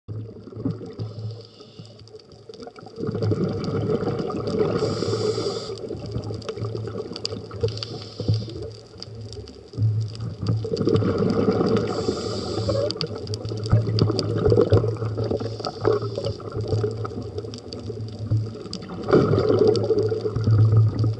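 Scuba diver breathing through a regulator underwater: loud surges of hissing inhalation and bubbling exhalation about every seven or eight seconds. Beneath them run a steady low hum and scattered sharp clicks.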